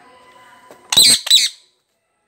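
Rose-ringed parakeet giving two loud, harsh screeching calls in quick succession about a second in.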